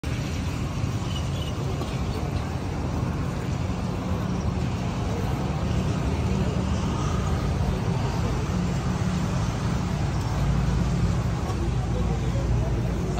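Steady street noise of a busy market road: a low traffic rumble with indistinct voices of people around.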